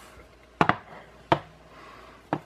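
Hard polymer gun parts knocking on a workbench as they are handled and set down: a sharp double knock about half a second in, then a single knock about a second later.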